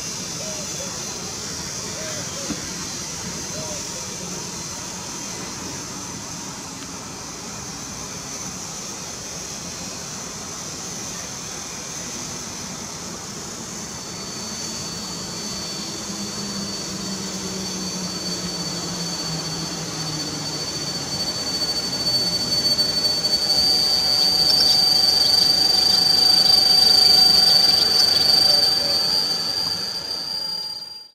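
An EP09 electric locomotive hauling an express passenger train runs into the station and brakes, with a low running hum that falls in pitch as it slows. A steady high-pitched brake squeal builds through the second half and is loudest in the last few seconds as the train comes alongside.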